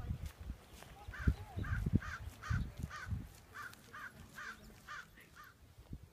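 A bird calling over and over in a quick series of short, alike calls, about two a second, starting about a second in. Low thumps of wind or handling on the phone's microphone lie underneath.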